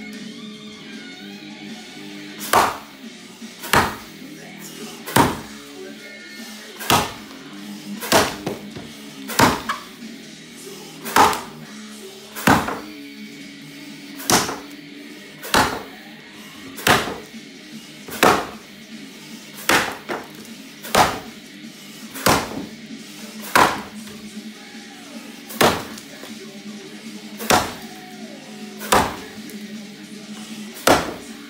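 Axe chopping underhand into a big dry 14-inch sycamore block, each blow a sharp whack into the wood, about one every second and a half, some twenty strokes.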